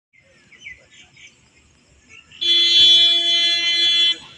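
Faint bird chirps, then about two and a half seconds in a loud, steady, single-pitched horn tone starts and holds without wavering until the end.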